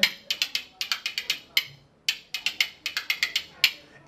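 Pair of curved spoons welded together, played by hand as a rhythm instrument: quick clacking strokes in an uneven rhythm, with a brief pause a little before halfway.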